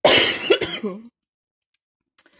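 A woman coughing and clearing her throat: a loud burst of several harsh coughs lasting about a second, from a recurring cough that troubles her at times.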